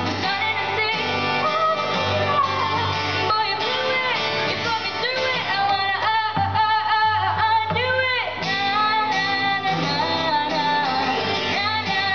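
A girl singing into a microphone, accompanied by a boy strumming an acoustic guitar: a live cover of a country-pop song. She holds several long notes around the middle.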